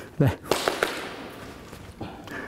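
A sharp smack of a mock strike landing on a pinned training partner, followed quickly by two lighter taps.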